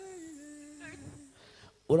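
A woman humming one long, closed-mouth "mmm" that slowly falls in pitch and fades out shortly after halfway.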